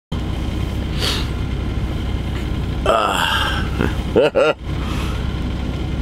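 A man lets out a drawn-out groan about halfway through and then laughs briefly, over a steady low rumble.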